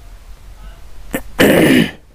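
A man clearing his throat once, loud and short, about a second and a half in.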